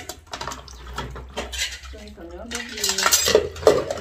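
Ceramic plates and bowls clinking and clattering against each other as they are washed by hand in a basin and stacked into a plastic tub, with a run of louder clatters in the second half.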